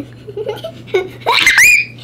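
Young girls laughing: a loud, high-pitched burst of giggling about a second in, rising in pitch before it breaks off.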